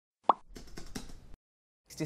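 A single short pop sound effect from an intro animation. It is a quick pitched blip, followed by a faint crackly hiss with a few small clicks that cuts off about a second later.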